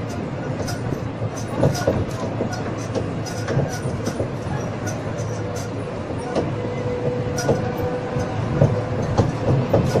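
Dotto road tourist train on the move: a steady engine drone under continual rattling and clicking from the wagons, with a faint steady whine that is strongest a little past the middle.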